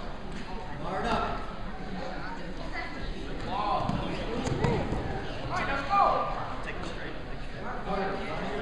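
Shouting voices of coaches and spectators during a wrestling scramble, loudest about six seconds in, with dull thumps of the wrestlers' bodies hitting the mat.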